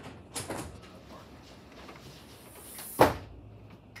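A few knocks: two light ones about half a second in, then a single sharp, much louder knock about three seconds in.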